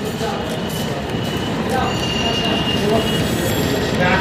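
Steady din of busy city-street traffic, with a thin high tone for about a second in the middle.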